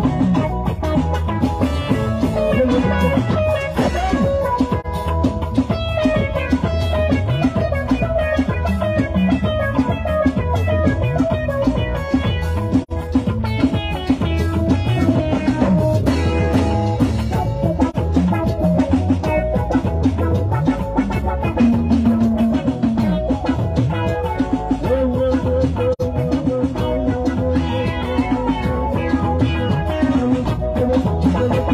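Esan music played live by a band: an electronic keyboard over drums, with a busy, steady beat.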